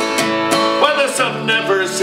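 Steel-string acoustic guitar strummed in a folk ballad, with a man's singing voice holding and bending notes in the middle and again near the end.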